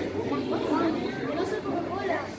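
Indistinct chatter of museum visitors, voices talking in the background with no clear words.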